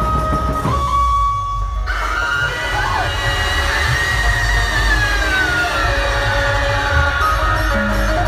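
Dhumal band music played loud through amplification: heavy drums under a held, pitched lead melody. The highs drop out briefly about a second in, and a long sliding note falls slowly in the middle.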